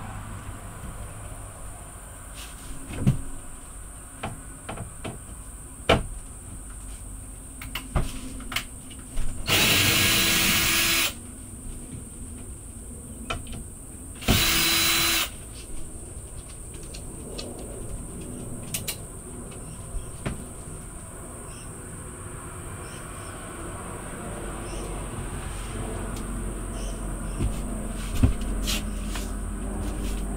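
Power drill run in two short bursts, one of about a second and a half about a third of the way in and a shorter one a few seconds later, backing out the screws of an old kitchen bench top. Scattered knocks and clunks of the cabinet being handled come throughout.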